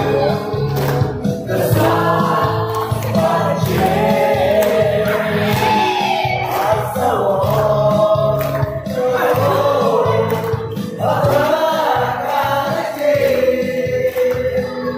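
A Mao Naga pop song playing, with sung vocals over a steady beat.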